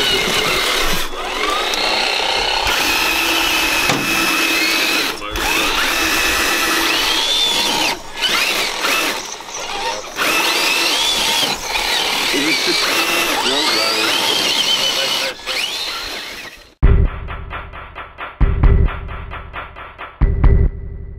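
Electric motors and gear drives of scale RC crawler trucks whining as they climb, the pitch rising and falling with the throttle and dropping out briefly now and then. About 17 seconds in it cuts to electronic music with a heavy beat.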